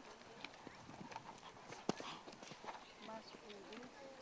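Faint, irregular hoofbeats of a dressage horse trotting on the sand arena footing, with one sharp click a little before two seconds in.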